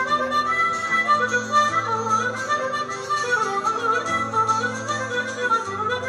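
Harmonica played into a hand-held microphone, carrying a quick Celtic melody over acoustic guitar accompaniment with held bass notes.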